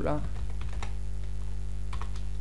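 A few separate computer keyboard keystrokes while a word in a text field is edited, over a steady low hum.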